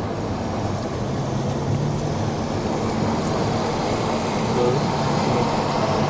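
Car engine hum and tyre and road noise heard from inside the cabin while driving, steady throughout.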